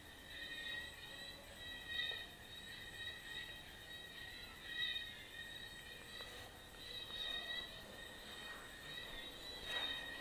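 Faint music with sustained, gently wavering high notes, and a soft knock near the end.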